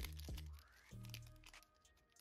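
Quiet background music with low steady tones, with a few faint clicks and rustles from Pokémon cards and their foil booster-pack wrapper being handled. It drops much quieter near the end.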